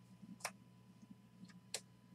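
Faint, sharp clicks of stiff chromium trading cards snapping as they are flicked off a stack one at a time: one about half a second in, then two close together near the end.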